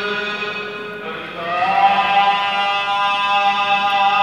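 Sikh Gurbani kirtan: a voice holding long notes over a steady harmonium drone, gliding up to a higher held note about a second and a half in.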